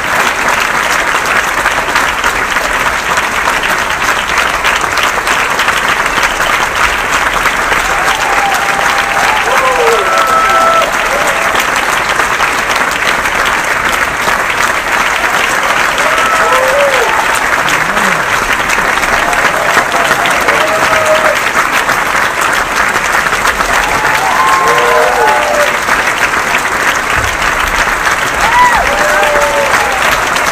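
Theatre audience applauding steadily through the curtain call, a dense, loud clapping, with a few voices whooping and calling out above it now and then.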